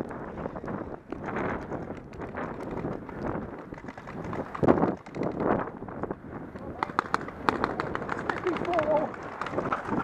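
Wind and movement rustle on a body-worn camera, with a loud rush about halfway through. In the second half comes a quick run of sharp cracks from paintball markers firing, and a voice calls out briefly near the end.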